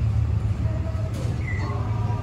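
A steady low rumble of outdoor ambience, with a brief high chirp about one and a half seconds in.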